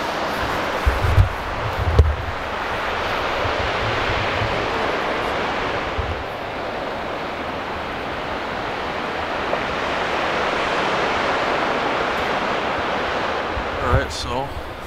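Steady rush of ocean surf, swelling and easing gently, with a few gusts of wind buffeting the microphone in the first couple of seconds.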